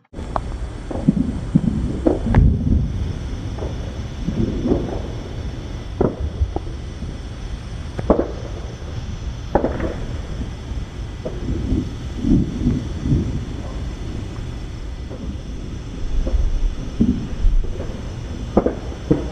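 Fireworks going off: irregular bangs and booms over a steady low rumble, with the sharpest cracks a couple of seconds in and around eight and nine and a half seconds in.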